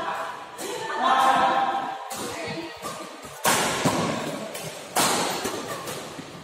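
Badminton rackets hitting a shuttlecock during a doubles rally: three sharp hits, each ringing on in the echo of a large hall.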